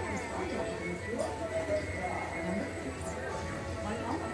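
Old-movie soundtrack played in a theme-park dark ride's cinema scene: music and voices, with horses neighing and hoofbeats.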